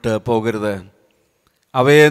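Only speech: a man praying aloud in Malayalam into a microphone, with a pause of about a second in the middle.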